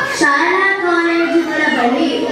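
A child's voice singing one long held note that steps down a little in pitch near the end, in a reverberant hall.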